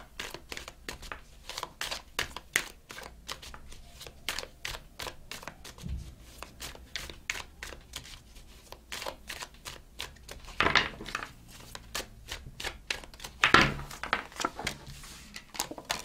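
A deck of tarot cards being shuffled by hand in an overhand shuffle: a long run of quick, uneven card clicks, several a second.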